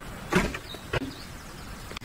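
Car door and rear hatch handling: a loud thump about a third of a second in, then a second, sharper knock just under a second in.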